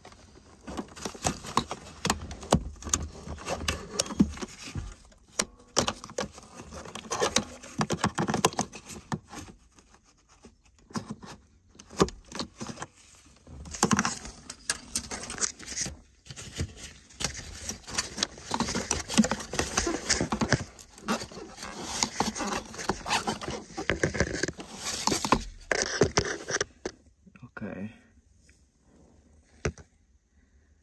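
Razor blade slicing and scraping through the rubber insulation pad around a car's airbag controller, in irregular strokes with rustling and clicking from hands and wiring. It pauses briefly a few times and stops near the end.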